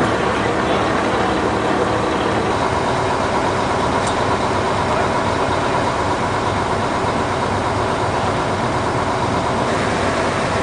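A large engine running steadily at an even speed, a continuous hum with no change throughout.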